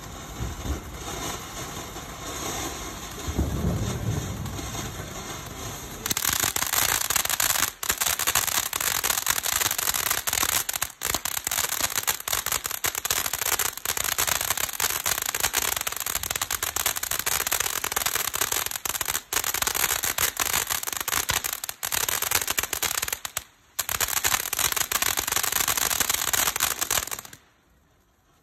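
Jupiter 'Apollo' Italian fountain firework burning, a hissing spray of sparks. About six seconds in it becomes much louder, with dense crackling, and holds with a few brief dips before cutting off abruptly just before the end.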